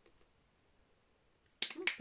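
Near silence for about a second and a half, then a sharp click and a woman starting to speak near the end.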